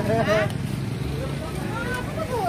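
Indistinct voices of people talking over a steady low mechanical hum.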